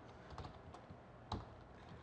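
Computer keyboard typing: a few faint, irregularly spaced keystrokes, one louder than the rest a little past the middle.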